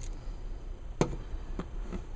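Plastic clicks from a Transformers figure being worked by hand: one sharp click about a second in, then a fainter one, as a stiff heel spur is pried down.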